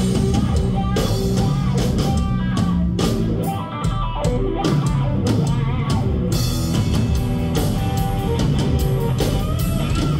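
Live blues-funk band playing an instrumental passage: electric guitar over bass guitar and drum kit, with a brief break in the beat about four seconds in.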